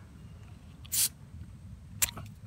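A short sharp hiss of air as a digital tyre-pressure gauge is pressed onto a tyre valve stem, with a click as it seats near the end.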